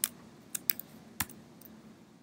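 A few separate computer keyboard key clicks, about four sharp taps, one of them the Delete key being pressed to delete selected files.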